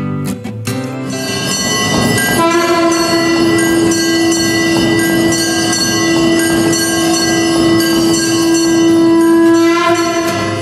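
A conch shell (shankha) is blown in one long, steady, horn-like note. It starts about two and a half seconds in and is held to the end, over a dense metallic ringing clatter of temple bells that begins about a second in. This is the conch and bells of a temple aarti.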